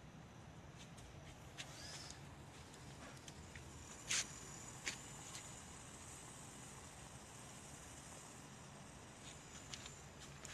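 Quiet outdoor background with a few faint clicks and one sharper short snap about four seconds in.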